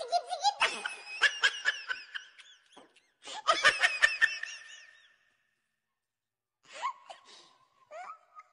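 Children laughing in two fits of giggling over the first five seconds, then falling quiet.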